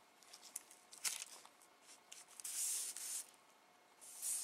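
Faint scratchy rubbing of a dry paintbrush working acrylic paint on a paper palette: several short scrapes, a click about a second in, and a longer scrape in the second half.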